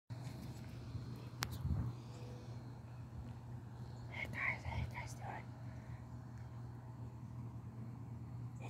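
A woman's soft, whispered voice for a second or so around the middle, over a steady low hum, with a sharp click near the start.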